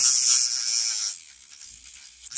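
BellaHoot electric nail drill's emery bit grinding against an acrylic nail tip with a high, hissy scratching over the faint motor buzz. The grinding drops away a little over a second in.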